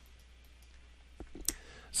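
Quiet room tone, then a few short clicks in the second half, the sharpest about a second and a half in.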